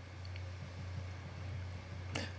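A faint steady low hum under light hiss, with no distinct sound event: background noise in a pause between words.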